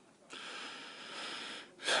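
A man's long sniffling breath in, lasting about a second and a half, as he is choked up with emotion mid-speech.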